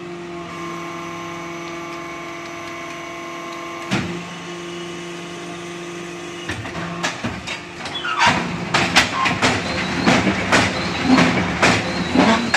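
HBY6-10 interlocking soil-cement brick machine running with a steady hum and a sharp click about four seconds in. From about halfway there is a fast, irregular run of loud metal clanks and knocks as the machine works through a cycle and the freshly moulded bricks come out onto the steel pallet table.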